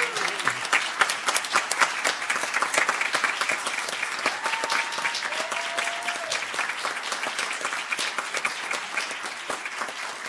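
Audience applauding, dense steady clapping from many people that slowly tapers off toward the end.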